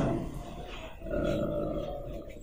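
A pause in a man's speech at the microphones: faint low voice sounds over steady room noise.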